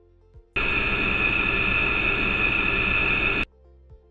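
A loud test noise with several steady tonal peaks, played through an optimized 3D-printed acoustic muffler built from small resonators, its peaks partly suppressed. It starts suddenly about half a second in and cuts off about three seconds later.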